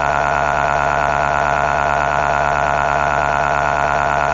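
A synthetic text-to-speech voice holding one long "aaah" cry at a steady, unchanging pitch.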